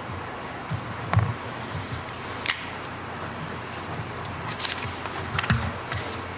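Papers and a document folder handled on a table close to a microphone: a few soft knocks and light clicks and a brief paper rustle over steady hiss.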